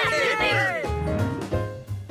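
A cartoon monkey's excited vocal chattering, with other voices overlapping in the first second, over background music.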